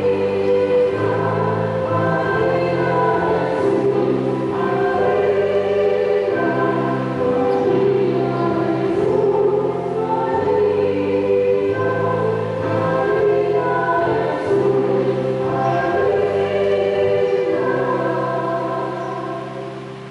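Church choir singing a hymn in held chords over a steady low accompaniment; the music dies away near the end.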